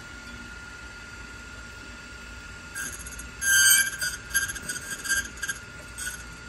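Rytan RY456 key duplicating machine running with a steady whine. From about three seconds in, its angled cutting wheel bites into a Medeco key blank in a string of short, high, scraping bursts, the loudest about half a second after they begin: the first 45-degree left angled cut being made.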